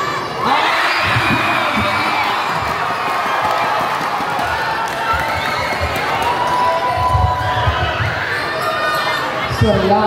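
Crowd of basketball spectators shouting and cheering, swelling about half a second in, with a basketball bouncing on the court in low thumps, a run of them near the end.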